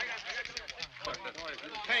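Men's voices talking over one another, with a shouted "Penny" near the end.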